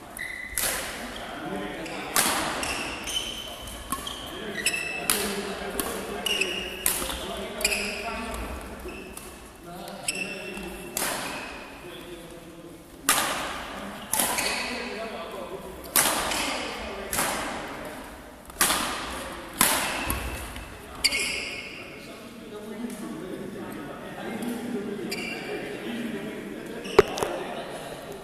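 Badminton rally: rackets striking a shuttlecock back and forth, sharp cracks about once a second, each echoing in the large sports hall, with two pauses between rallies.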